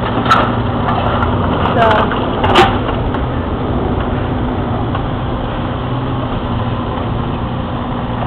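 Steady low drone of a construction machine's diesel engine running, with a few sharp knocks in the first three seconds.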